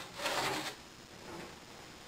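Cardboard lid of a plastic model kit box rubbing as it is slid off the box, a brief scrape in the first half second or so.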